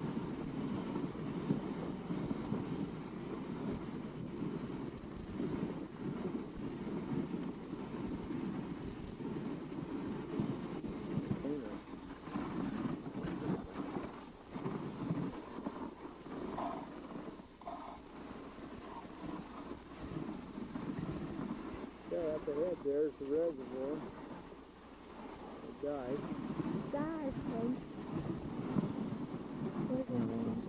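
Dog sled moving over snow behind its team: a steady low noise of the ride and wind on the microphone. From about two-thirds of the way in, a wavering, voice-like pitched sound comes and goes over it.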